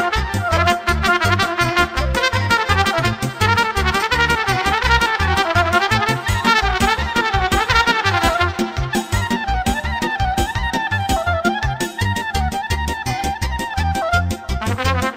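Moldovan folk dance music: a trumpet plays a fast, ornamented melody over a backing band's steady, driving beat.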